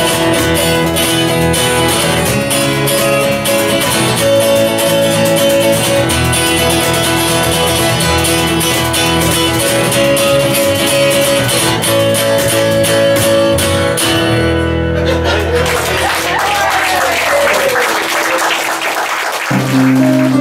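Live acoustic folk trio playing without vocals: steel-string acoustic guitar strumming chords over electric bass and a cajon. The tune stops about fifteen seconds in and gives way to a noisier stretch.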